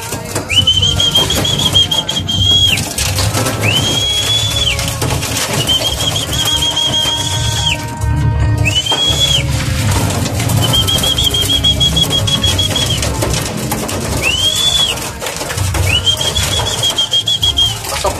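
A high whistle blown in long, wavering notes about seven times. Each note slides up, holds, and breaks off, over a low rumble. These are the sort of calls used to bring homing pigeons into the loft.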